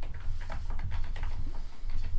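Computer keyboard typing: a quick run of irregular key clicks over a low steady hum.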